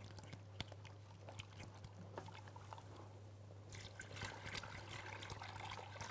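Faint ticking and scraping of a wire whisk in a pot as milk is poured in a little at a time over a flour roux for béchamel sauce. The pouring hiss grows somewhat louder about two-thirds of the way through.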